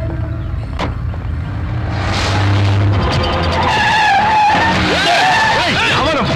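Van engine rumbling, then from about two seconds in a rising rush of tyre noise with repeated wavering tyre squeals as the vans race side by side, mixed with film background music.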